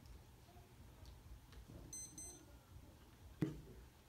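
Quiet room tone with two short high beeps about halfway through and a single thump near the end.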